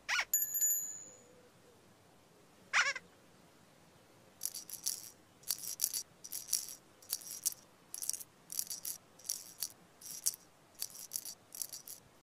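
Children's-TV sound effects: a quick whistle-like glide with a brief high chime right at the start, a second glide about three seconds in, then a shaker-like rattle shaken in a steady rhythm of short bursts, about one and a half a second, from about four and a half seconds on.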